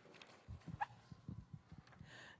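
Faint handling noise at a table: a few soft knocks and a brief squeak just before a second in.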